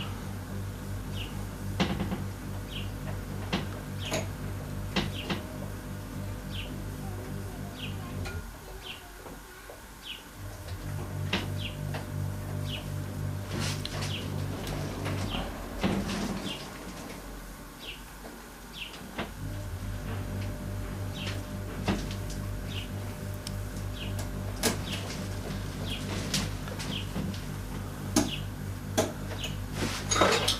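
Light clicks and taps of a small screwdriver and wire terminals being worked on a bench, over a steady low hum that drops out twice. Faint short high chirps repeat about once a second.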